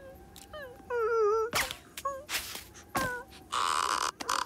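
A cartoon lizard's wordless vocal noises: short squeaky calls that bend up and down in pitch, then a buzzy strained sound near the end. Sharp cartoon sound-effect clicks fall in between.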